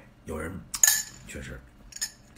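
A metal spoon clinking and clattering against tableware in a few short knocks, the loudest a sharp, ringing clink just under a second in.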